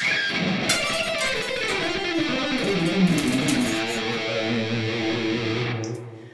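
ESP LTD Deluxe single-cut electric guitar playing a fast, evenly alternate-picked run of repeating six-note groups, moved up across the strings. The notes ring out and fade near the end.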